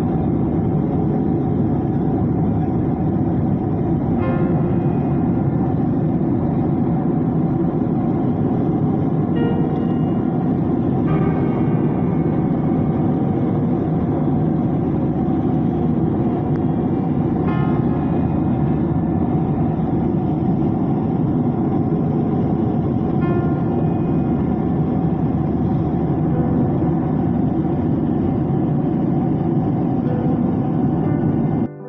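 Steady, loud drone of a passenger aircraft's cabin noise, engines and rushing air heard from inside the cabin, deep and unchanging.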